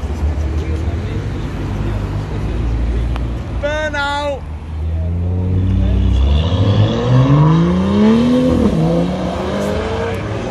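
BMW performance cars pulling away: a low engine rumble, then an engine revving hard in rising sweeps through the second half, with a gear change near nine seconds. A brief shout rises over it about four seconds in.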